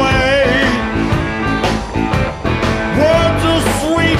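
Live rock band playing, with electric guitars, bass and drums. A lead line bends and wavers in pitch over a steady beat.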